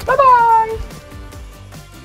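A man calling out a drawn-out 'bye bye' in Thai, high and falling in pitch, over background music that carries on after it.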